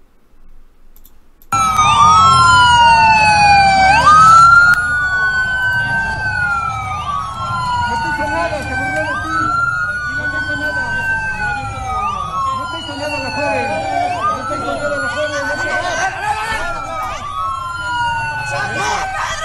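Police sirens wailing loudly from about a second and a half in, each cycle rising quickly in pitch and then falling slowly over roughly two and a half seconds, with more than one siren overlapping out of step.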